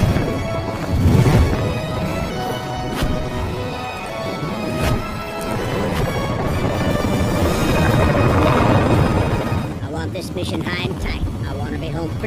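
Film trailer soundtrack: sustained orchestral music with deep booming hits near the start, layered with sound effects. Wavering high calls or voices come in near the end.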